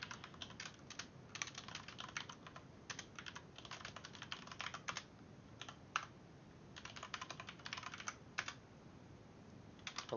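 Computer keyboard typing, faint runs of quick keystrokes broken by short pauses, stopping for about the last second and a half.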